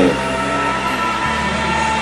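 A low, steady engine-like rumble from a nearby running motor, which deepens slightly a little past halfway.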